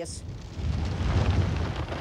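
A low, noisy rumble with a hiss over it, swelling about half a second in and then holding steady.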